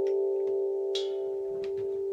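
GANK steel tongue drum ringing out after its last strike, several notes sustaining together and slowly fading. A few light clicks from the mallets being handled, the sharpest about a second in.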